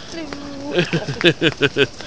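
A person's voice: a short held hum, then a quick run of about five bursts of laughter.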